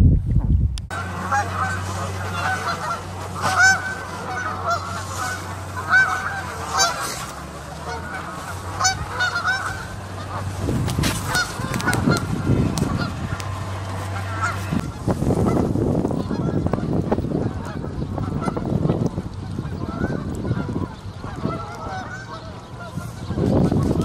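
Canada geese honking, many calls overlapping for the first half or so, then thinning to scattered honks over a low rumbling noise in the second half.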